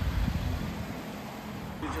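A low, uneven outdoor rumble, with a man's voice starting near the end.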